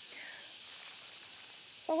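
Steady high-pitched chorus of insects.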